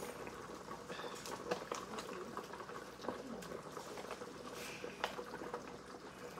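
A pot of goat meat stock with palm oil boiling steadily on the stove: a faint, even bubbling, with a few light clicks of handling.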